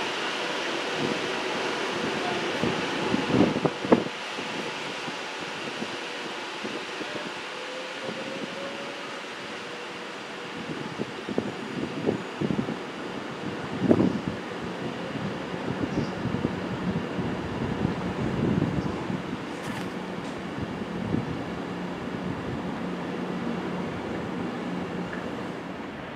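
Class 390 Pendolino electric train moving through a station: a steady running noise broken by a few sharp knocks, with a low steady hum in the last several seconds.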